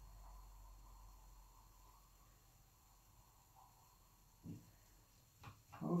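Very quiet room tone with a faint low hum, and one short soft sound about four and a half seconds in.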